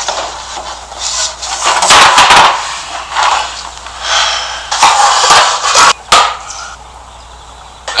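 Brewed tea pouring from a French press into a mug, splashing in uneven surges that die down near the end.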